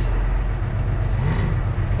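Cummins ISX diesel engine of a Volvo 780 semi truck running, heard from inside the cab as a steady low drone with road noise.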